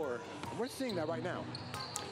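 A basketball bouncing on a hardwood gym floor, with voices from the court underneath.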